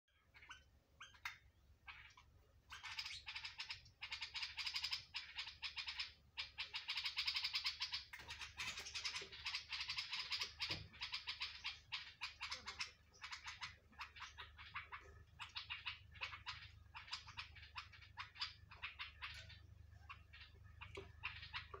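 Small birds chirping, a few separate chirps at first, then rapid dense chattering in long runs from about three seconds in.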